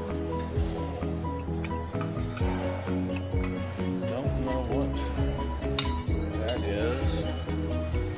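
Background music with a steady beat, over dishes and cutlery clinking at a buffet counter, with people talking.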